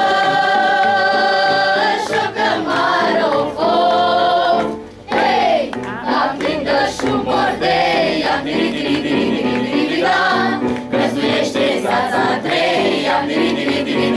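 Mixed folk choir of men and women singing a Romanian traditional song, with a brief pause between phrases about five seconds in.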